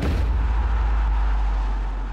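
A deep booming transition sound effect: a sudden hit followed by a sustained low rumble with a rushing hiss, fading away near the end.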